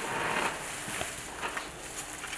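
Faint rustling and a few light clicks as items are handled at a clinical observation trolley.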